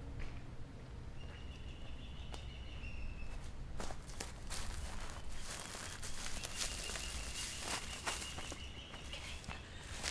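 Footsteps of a person walking down a sandy forest path littered with dry palm fronds and twigs, irregular soft steps over a steady low outdoor rumble. A thin, high steady tone comes in twice in the background.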